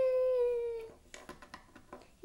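A young boy's voice holding one long wordless wailing note, a play sound effect for a toy fight, that sinks slowly in pitch and fades out about a second in. A few faint clicks of Lego pieces being moved on the table follow.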